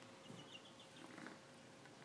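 Near silence, with a faint quick run of short, high peeps from young chickens in the first second.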